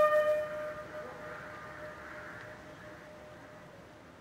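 A bugle call's long held final note, sounded for a military salute, breaks off about half a second in. Its ring dies away into a faint, fading hush.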